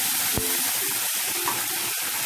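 Onions and ground spice pastes sizzling steadily in hot oil in a metal kadai as they are stirred with a spatula, with one brief knock of the spatula against the pan about half a second in.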